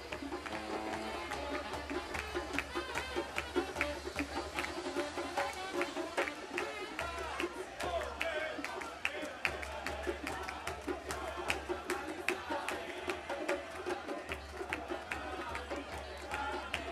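Hand drum beating a steady rhythm under singing and crowd voices: festive music of a bar mitzvah celebration.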